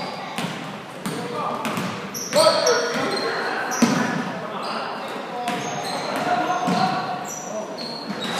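Youth basketball game in a gymnasium: a basketball bouncing on the hardwood floor, sneakers squeaking in short high chirps, and players and spectators shouting, all echoing in the large hall.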